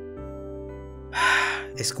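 Soft background music holding steady notes. About a second in comes a half-second audible breath, a dubbing voice actor's sigh or gasp, and speech begins just at the end.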